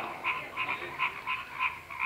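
Faint, rapid pulsing animal calls, a steady train of about five short pulses a second.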